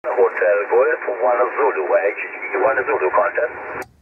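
A distant station's voice received on 2-metre single sideband and heard through the transceiver's speaker: thin, narrow-band speech over a light hiss of radio noise, which cuts off abruptly just before the end as the rig switches to transmit.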